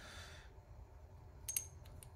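Quiet handling: a soft breath, then a small metallic click with a brief high ring about a second and a half in, as a brass MLCP press fitting is set into a steel TH-profile crimp jaw.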